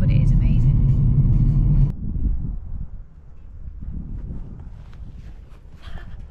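Steady low road rumble inside a moving car's cabin, cutting off abruptly about two seconds in. It gives way to quieter, uneven wind noise on the microphone outdoors.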